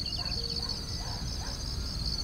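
Crickets chirping in a steady, high, rapidly pulsing trill, over a low background rumble.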